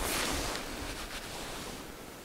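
A soft rushing noise at the microphone that starts with a click and fades away over about two seconds: handling and clothing rustle as the camera is swung around.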